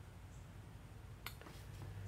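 Quiet room tone with a steady low hum and one faint click about a second and a quarter in.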